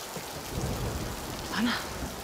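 Steady rain in a TV drama's soundtrack, with a low rumble swelling from about half a second in. Near the end a woman briefly says a name.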